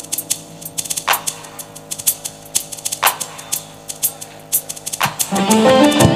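Live band: a drummer keeps a light ticking time on cymbal or hi-hat, with a stronger hit about every two seconds, over faint held notes. Near the end the full band comes in loudly with electric guitars, bass and drums.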